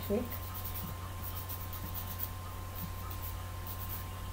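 Faint, irregular scratching as a graphite pencil tip is rubbed against a fine-grade nail file, over a steady low electrical hum.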